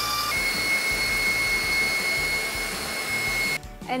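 KitchenAid Professional 550 HD stand mixer running on high speed, its wire whisk beating eggs and sugar in a steel bowl: a steady high motor whine over a whirring rush, which cuts off suddenly near the end.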